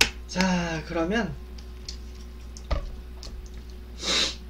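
A sharp click as a plastic water bottle's cap is twisted, followed by a man's wordless hum with a gliding pitch lasting about a second. A single dull thump comes near three seconds in.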